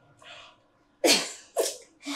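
A young woman sneezing twice: two sharp, breathy bursts about half a second apart, the first the louder.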